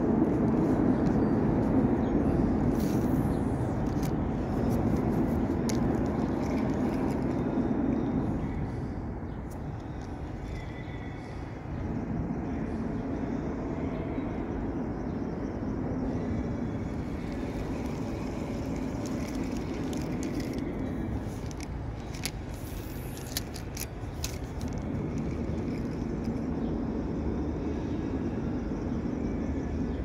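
Road traffic running on the highway bridge overhead: a steady low rumble that swells and eases as vehicles pass, with a few faint clicks.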